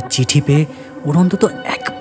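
A man's voice speaking in Bengali, in short broken phrases, over a steady background music drone.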